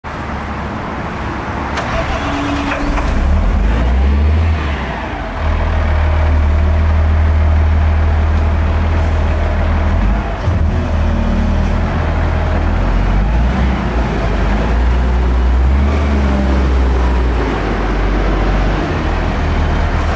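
Volvo L120F wheel loader's six-cylinder diesel engine running as the machine drives and turns, a deep rumble that swells and eases with the throttle and dips briefly about five seconds in.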